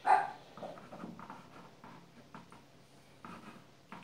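A dog barks once, loudly and sharply, at the very start, followed by a few much fainter short sounds over the next second. Faint scratching of a drawing stick on canvas runs underneath.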